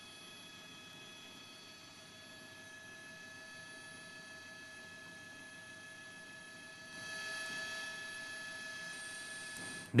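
Faint steady electronic tones at several pitches over a low hiss, a little louder from about seven seconds in.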